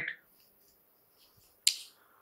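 A single short, sharp click about one and a half seconds in that dies away quickly, in an otherwise near-silent pause.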